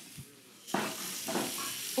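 A salmon fillet set down on the hot ridged plate of an 1800-watt electric indoor grill, starting to sizzle under a second in and sizzling steadily.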